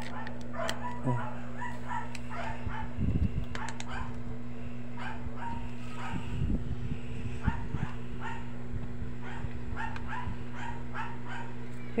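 A dog giving short, rising high-pitched calls, two or three a second with small gaps, over a steady low hum. A couple of soft knocks fall about three and six and a half seconds in.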